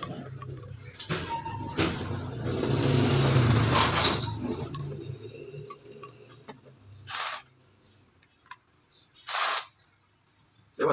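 Cordless drill driving a reciprocating-saw adapter head, the motor and the adapter's mechanism running with a steady hum that swells to its loudest around three to four seconds in and dies away by about six seconds. Two short bursts of noise follow later.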